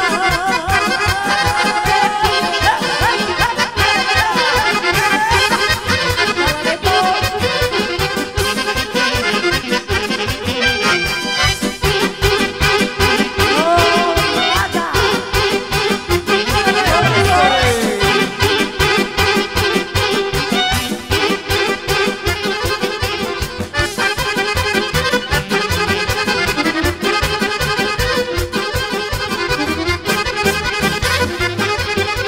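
Live Serbian folk wedding band playing a fast kolo dance tune, the accordion leading over a steady, driving beat.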